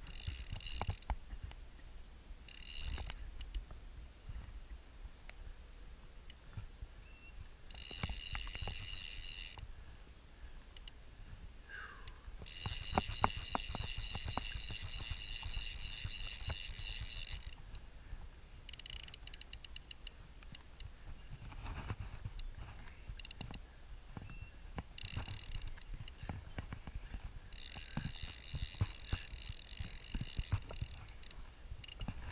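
Click-and-pawl fly reel ratcheting in several bursts, from under a second to about five seconds long, as line is wound in or pulled off the spool. Light knocks fall in between.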